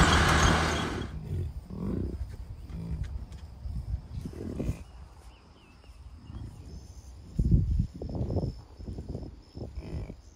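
A side-by-side UTV driving, with its engine hum and a rush of wind, cutting off about a second in; then American bison grunting close by, a run of short low grunts, the loudest about seven and a half seconds in.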